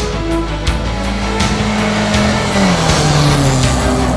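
A rally car's engine running hard as the car passes. Its note drops to a lower pitch a little past halfway through, and background music with a beat plays over it.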